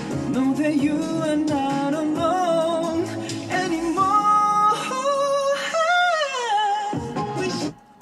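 A young man singing a pop vocal take over a backing track, with a long high note around the middle of the phrase. The singing cuts off suddenly just before the end.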